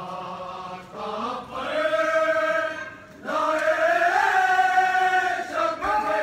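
Men's voices chanting a noha, a Shia mourning lament, in long drawn-out held notes, with a brief break about three seconds in before a long rising note.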